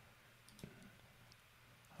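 Near silence: room tone with a few faint computer mouse clicks, about half a second in and again a little past the middle.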